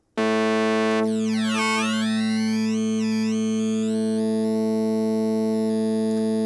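Vital wavetable synth, one oscillator on the 'Squish Flange' wavetable, holding a single low note. About a second in, its upper tone sweeps down and back up as the wavetable frame position is dragged, then it settles into a steady buzzy tone.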